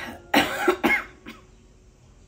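An older woman sobbing in grief: a breath in, then two loud, choked sobs, rough like coughs, about half a second and a second in.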